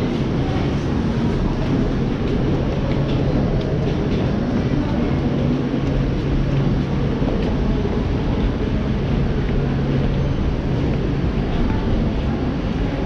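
Steady noise of an underground metro station: a low hum that holds through most of the stretch and dies away near the end, over a constant rumble, with footsteps of people climbing concrete stairs.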